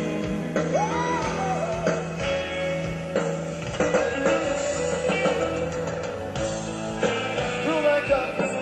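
Live hard rock band playing: electric guitar, bass and drums driving along with a singer's voice, with pitch glides about a second in and again near the end.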